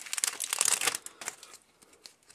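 Foil booster-pack wrapper crinkling as the cards are pulled out of it, dying down after about a second to faint handling of the cards.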